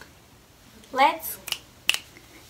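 A short voiced sound rising in pitch about a second in, then two sharp clicks close together near the end.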